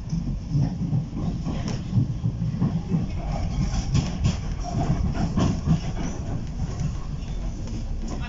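A Docklands Light Railway B07 Stock light-rail train running along the track, heard from inside the carriage: a steady low rumble of wheels on rail with occasional sharp clicks, several of them about halfway through.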